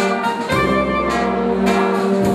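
Czech-style brass band (dechovka) playing: clarinets and trumpets carry held melody notes over a tuba bass line, with cymbal strokes from the drum kit.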